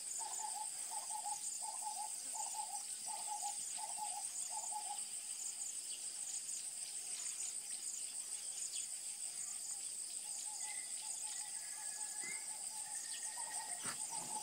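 A steady, high-pitched insect drone. Over it, a bird repeats a hooting note about twice a second for the first five seconds, and gives a longer held note later on.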